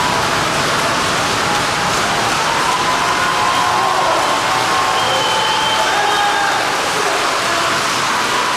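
Church congregation applauding: a steady mass of clapping from a standing crowd, with a few voices calling out over it.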